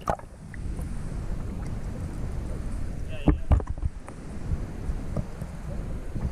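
Water sloshing around a GoPro held at and just under the surface, a muffled low rumble, with a couple of thumps a little past three seconds in.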